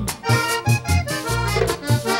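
Vallenato music played live: a diatonic button accordion plays a melodic run over a bass line and steady percussion, with no singing.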